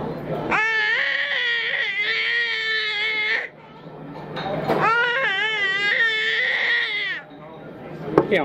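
A baby's voice in two long, high-pitched, wavering cries of about three seconds each, with a short gap between them.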